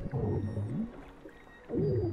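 Two low, moaning tones that slide down and back up in pitch, one early and a louder one near the end, with a muffled underwater quality.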